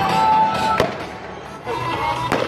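Aerial firework display: one sharp bang of a shell bursting a little under a second in, with lighter crackle later on, over a held pitched tone that stops just before the bang.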